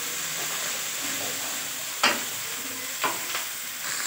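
Sliced capsicum and onion sizzling in hot oil in a nonstick wok as they are sautéed and stirred with a wooden spatula. The spatula knocks sharply against the pan about halfway through and twice near the end.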